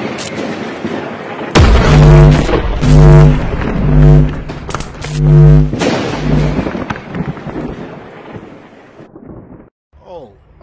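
Cinematic logo-intro sound design: a rushing whoosh, then a series of deep bass hits, each carrying a held low synth tone, about a second apart, dying away over the last few seconds.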